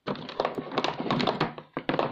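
An OBD diagnostic cable and its metal connector being handled against a hard plastic carrying case, giving a quick run of knocks and taps with a sharp click near the end.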